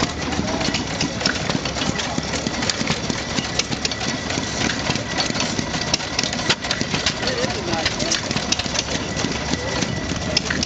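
Hopper-cooled Stover hit-and-miss stationary engine running slowly, with irregular clicks from the running engine. People's voices can be heard in the background.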